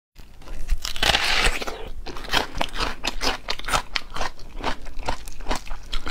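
A crisp bite into a whole raw red onion, then crunching as it is chewed. The first crunch is the longest, lasting from about half a second to two seconds in, followed by many short, sharp crunches.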